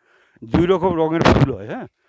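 A man speaking briefly, his voice rising at the end as in a question.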